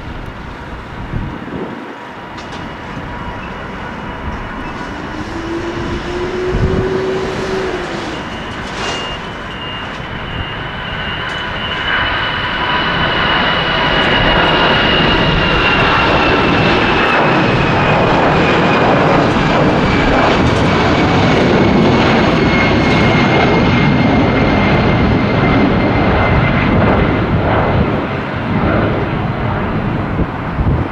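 Airbus A320-214's CFM56 turbofan engines at take-off thrust through the take-off roll and climb-out: a steady rumble that grows louder from about twelve seconds in and stays loud, with a high whine that slowly falls in pitch as the aircraft passes.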